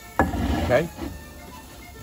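A heavy cast-iron skillet set down on a stone ledge with a clunk just after the start, followed by a small knock about a second in.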